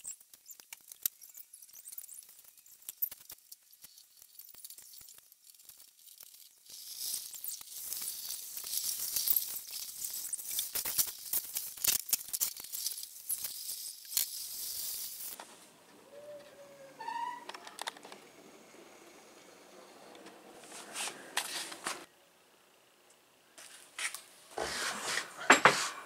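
Hydraulic cylinder parts being handled on a metal workbench: scattered light clicks and knocks, with a long stretch of rubbing or hissing noise in the middle.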